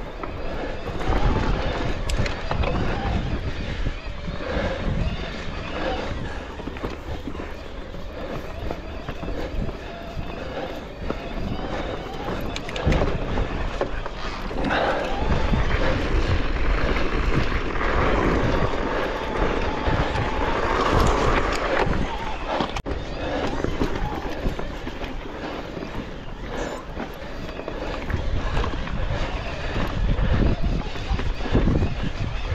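Mountain bike riding over a rough, stony dirt trail: tyres crunching on loose rock and gravel and the bike rattling with many small knocks, under steady wind rumble on the camera microphone.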